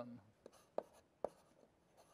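Writing on a board: a few short, sharp taps and strokes, about four in a second and a half.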